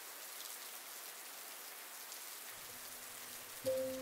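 Steady rain falling on wet paving and outdoor tables, an even hiss. Near the end a low, held musical note comes in over it.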